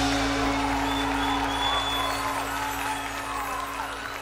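A live rock band's final chord held and ringing out, slowly fading, as the audience starts cheering at the end of the song.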